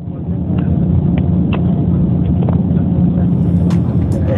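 Steady low engine and road rumble heard from inside a moving vehicle, with a few faint clicks.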